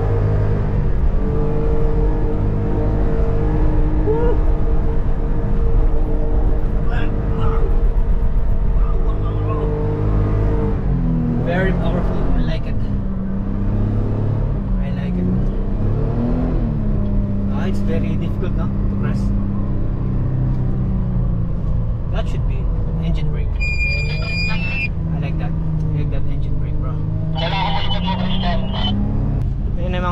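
4x4 SUV engine running under load while driving over sand dunes, heard from inside the cabin, its engine note shifting about 11 seconds in and then holding steady again. A short high electronic tone sounds a little after the middle.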